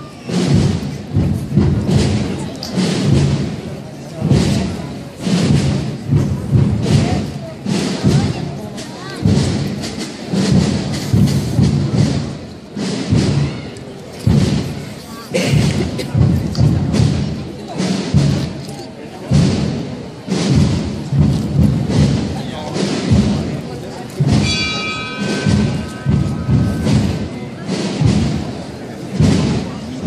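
Procession drums beating a steady, repeated marching rhythm with heavy low strokes. A brief high held tone sounds near the end.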